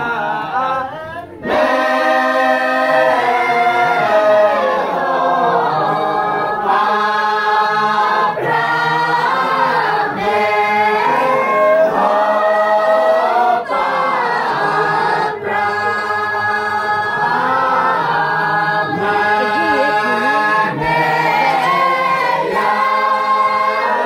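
A mixed group of villagers singing a hymn together in a cappella, with no instruments. A single quieter voice leads for about the first second and a half, then the whole group comes in loudly and sings on in long phrases with brief breaths between them.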